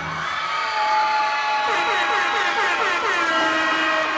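Electronic sound effect ending the routine's music track: a held synthetic tone, joined about a second and a half in by a quick series of repeated falling-pitch sweeps.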